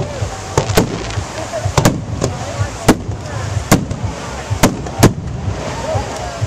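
Aerial firework shells bursting one after another, about nine sharp bangs in six seconds at uneven spacing, with crowd voices underneath.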